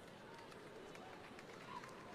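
Near silence: faint room tone of a large hall with a seated congregation, with a few faint murmurs and small noises.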